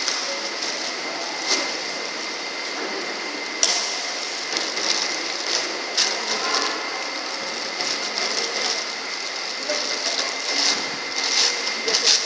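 Badminton rally: sharp racket strikes on the shuttlecock every couple of seconds, turning into a quicker run of clicks and footwork on the wooden court near the end, over a steady hiss and a thin high tone.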